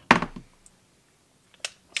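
A few sharp clicks and knocks from the cordless impact wrench being handled: a quick cluster at the start, then two single clicks near the end.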